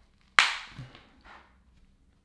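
A sharp snap from a black nylon belt pouch being handled and laid down on a wooden table, followed by two softer fabric rustles.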